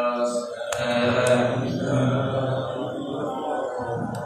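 Men's voices chanting a melodic religious recitation. About a second in, a low rumble from the camera being handled joins in and lasts a couple of seconds.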